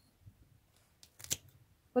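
Spring-loaded pruning shears snipping through an old, nearly woody pelargonium stem: one sharp cut a little past the middle, with a couple of faint clicks just before it.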